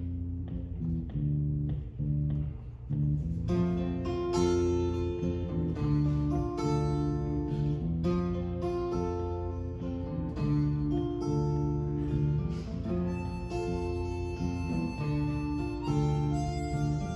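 Instrumental song intro on two strummed acoustic guitars over an electric bass line; the full guitar strumming comes in about three and a half seconds in. Near the end a harmonica joins with long held notes.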